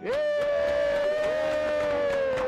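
A single long sustained musical note that slides up at the start and is then held steady, with a softer lower note sounding under it.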